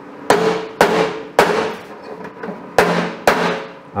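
Ball-peen hammer striking a steel edging jig, tapping quarter-inch steel round bar in against a sheet-metal bonnet edge until it sits flush. Five sharp metallic blows, each ringing briefly: three about half a second apart, then a pause and two more.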